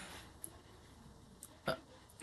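Quiet room tone with two faint clicks, then a short hesitant 'uh' from a woman near the end.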